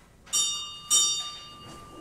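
A small high-pitched bell struck twice, about half a second apart, each stroke ringing and fading away.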